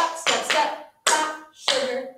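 Tap shoes striking a hard floor together with hand claps in a step-step-clap tap pattern: four sharp strikes, each ringing briefly.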